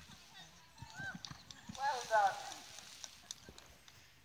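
Horse's hooves thudding on the sand arena after a jump, with a quavering, falling whinny about two seconds in.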